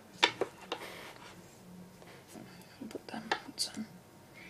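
Plastic pieces of a ball-and-stick molecular model kit clicking as bond sticks are pushed into atom balls. The loudest click comes about a quarter second in, with two or three more in the first second and a cluster of clicks near the end.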